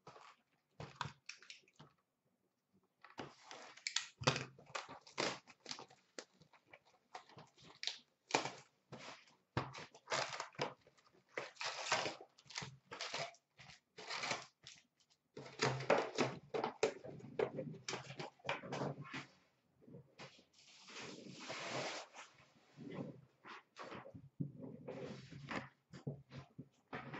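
Cardboard hobby boxes and foil card packs being handled and opened: a quick run of crackles, scrapes and taps of cardboard and wrappers, with a longer rustling stretch about three-quarters of the way in.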